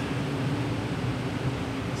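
Steady low hum and rushing noise of a large cruise ship's machinery as it manoeuvres alongside to dock.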